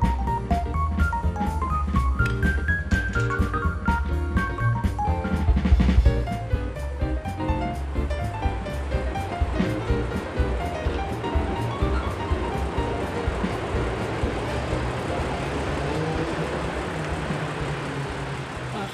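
Background music with a drum beat for about the first six seconds, then cut off. After that, an S-Bahn commuter train running over an elevated concrete viaduct makes a steady rumbling, rattling noise.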